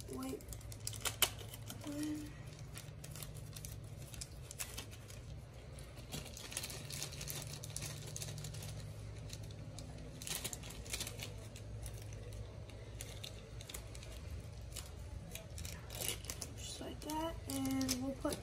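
A small clear plastic bag crinkling and rustling in fits and starts as fingers work it open.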